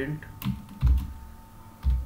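Keystrokes on a computer keyboard: a few separate key taps while code is typed.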